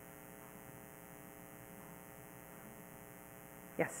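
Faint, steady electrical mains hum in the room's sound pickup during a pause, with no other sound until a brief spoken "Yes?" right at the end.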